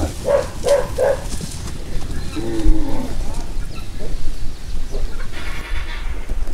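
A herd of humped beef steers calling, with one drawn-out moo about two and a half seconds in and a few short calls in the first second, over a steady low rumble.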